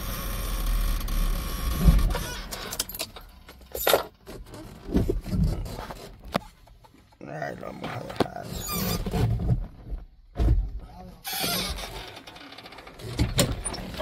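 A truck engine idles low for the first couple of seconds, then scattered knocks and clicks come from inside the cab as the vehicle is stopped and its door is opened.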